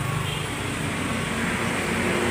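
A motor vehicle's engine running with a steady low hum that eases off a little over the two seconds.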